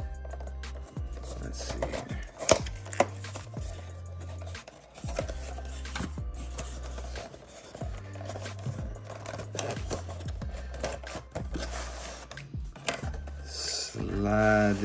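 A cardboard and plastic toy-car box being opened by hand: rubbing and scraping with sharp clicks, the loudest about two and a half seconds in. Background music with a steady bass line plays underneath.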